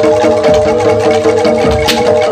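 Jaranan gamelan music: metal mallet instruments ring repeated notes over a deep drum beat that falls a little over a second apart. A sharp crack comes near the end.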